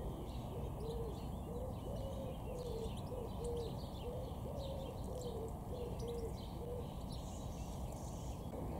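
A bird calling a long series of short, low hooting notes, about two a second, some slightly higher than others, with faint high chirps of small birds.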